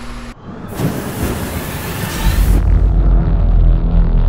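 Cinematic logo sting: a loud whoosh of noise for about two seconds that cuts off suddenly, overlapped by a deep booming rumble that carries on as the music begins.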